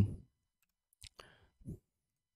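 A few faint, sharp clicks about a second in, then a brief soft low sound, in an otherwise near-silent pause.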